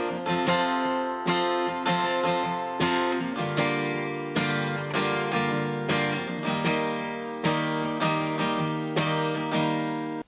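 Steel-string acoustic guitar with a capo, strummed steadily through the chorus chord progression (G, D, E minor 7, C). The chord changes about three and a half seconds in and again about six and a half seconds in.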